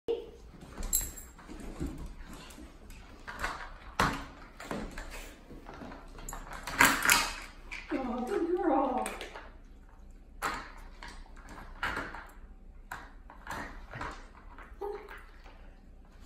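Plastic dog treat puzzle clacking on a hardwood floor as a dog noses and paws at its lids and sliding pieces: an irregular string of sharp clicks and knocks.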